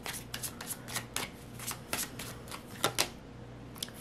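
A tarot deck being shuffled by hand: a run of light, irregular card clicks and flicks, with a sharper snap about three seconds in.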